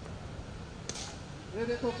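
Cricket bat striking the ball: a single sharp crack about a second in.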